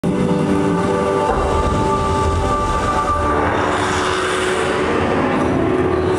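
A TV commercial's soundtrack heard through venue loudspeakers: sustained chords that change a few times over a low rumble, with a rushing noise that swells in the second half.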